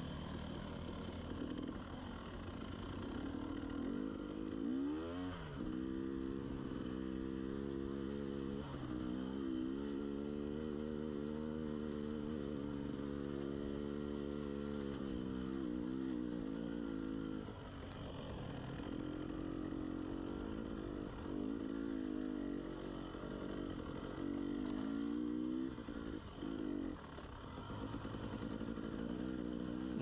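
Dirt bike engine running on a rocky trail. It revs up about five seconds in and holds a steady pitch for some ten seconds, then eases off and revs up again briefly near the end.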